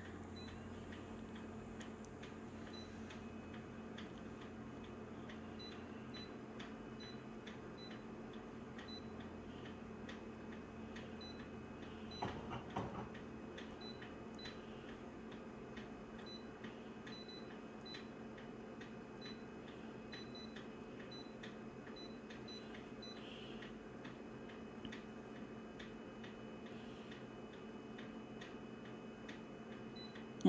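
Short high beeps from a multifunction copier's touchscreen as its on-screen buttons are pressed, coming singly and in quick runs, over the machine's steady low hum. A brief louder sound about twelve seconds in.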